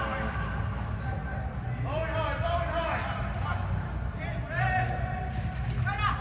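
Soccer players shouting and calling to one another in a large indoor hall, the loudest calls coming about two seconds in and again near the end, over a steady low hum.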